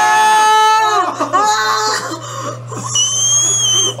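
High-pitched screaming in disgust at a pimple being squeezed. A long held scream opens it, shorter cries follow, and a very high, thin shriek comes near the end.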